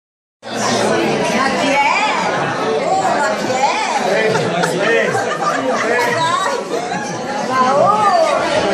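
Several people talking over one another, a steady chatter of voices in a large room, starting about half a second in.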